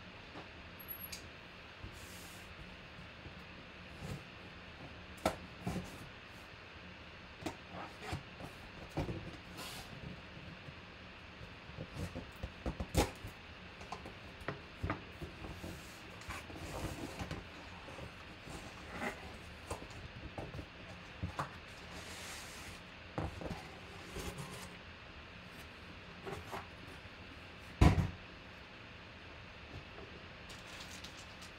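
A cardboard box being opened by hand and its contents lifted out: scattered knocks, scrapes and rustles of cardboard, with one loud thump near the end.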